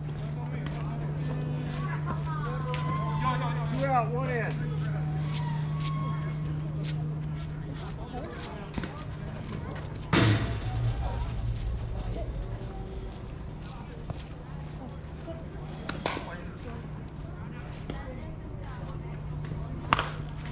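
Scattered voices over a steady low hum, then about halfway through a single sharp crack with a brief ring, typical of a slowpitch softball bat hitting the ball. A fainter knock follows a few seconds later.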